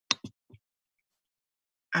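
Three short, sharp clicks in quick succession in the first half second, the first the loudest, followed by dead silence.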